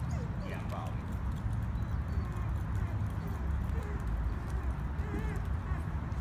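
Steady low rumble of wind on the microphone, with faint voices in the background.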